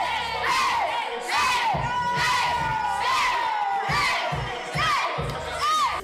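A small group of women cheering and screaming with excitement, many high-pitched voices rising and falling over one another.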